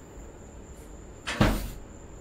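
A single loud, heavy thump about one and a half seconds in, dying away within half a second.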